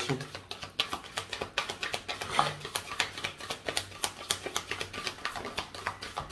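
A tarot deck being shuffled by hand: quick, irregular clicks and flicks of the cards against each other.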